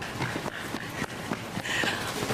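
Hurried footsteps: a quick, irregular run of knocks as several people rush in.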